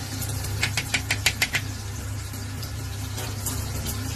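A ladle knocking against the side of an aluminium cooking pot while stirring rice porridge: about six quick taps in the first couple of seconds. A steady low hum runs underneath.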